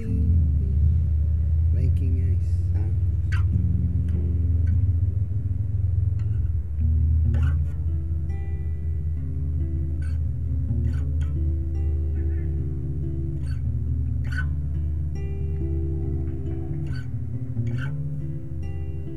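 Solo acoustic guitar playing an instrumental passage, picked notes changing over low ringing bass strings, with a short dip in loudness about seven seconds in.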